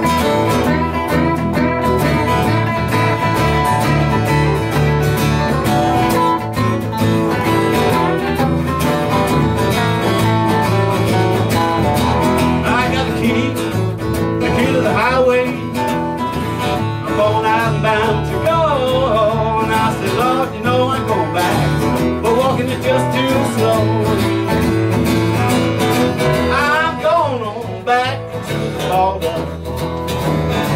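Live folk-blues guitar music with no singing: acoustic guitar strumming under electric guitar lead lines that waver and glide in pitch, mostly in the second half.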